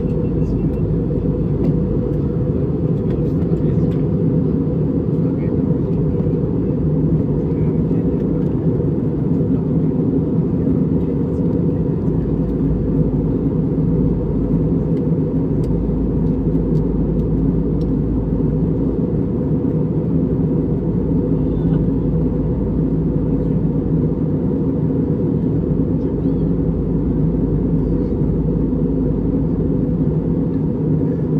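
Steady low rumble of an airliner cabin in flight, the engine and airflow noise heard from a window seat, with a few steady low hums under it.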